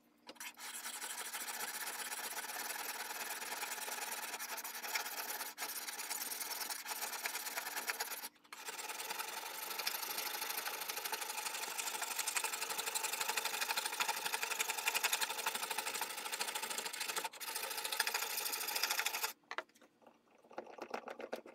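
Hand file rasping across a steel blade in fast continuous strokes, filing a bevel toward the tip. It pauses briefly about 8 seconds in and stops just before the end.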